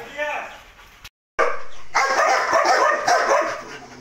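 A dog barking in a rapid, dense run starting about a second and a half in.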